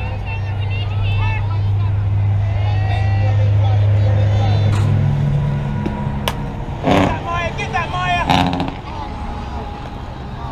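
A single sharp hit of a bat on a fastpitch softball about six seconds in, followed at once by loud shouts and cheers from spectators. Voices call out throughout over a steady low engine hum that steps up in pitch shortly before the hit.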